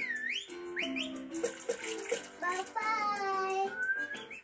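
Cartoon soundtrack heard through a TV speaker: whistle-like notes sliding up and down over short plucked notes, with a splashing water sound effect in the middle, then a long falling tone.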